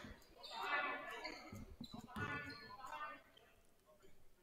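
Faint voices calling out across a gymnasium, with a basketball bouncing on the hardwood floor, during the pause before a free throw; it falls quiet near the end.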